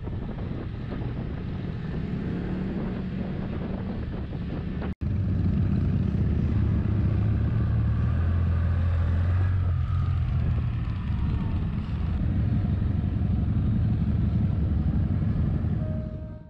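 Can-Am Spyder F3-T's inline three-cylinder engine running under way, with wind rushing over the bike-mounted microphone. About five seconds in, the sound cuts out for an instant, then comes back as a louder, deeper, steady engine drone while the bike rolls along slowly.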